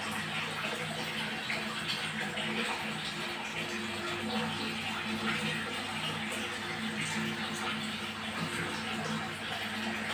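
Steady rushing water in a fish tank, with a low hum underneath that fades in and out.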